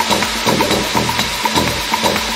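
Electronic dance music from a DJ set in a breakdown with the kick drum out: a quick repeating percussion tick, about four a second, over a sustained noisy wash and low bass.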